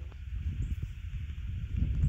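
Low, uneven rumbling on the microphone that grows louder near the end, over a faint steady hiss.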